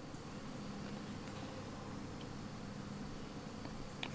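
Faint, steady background noise with no distinct sound event.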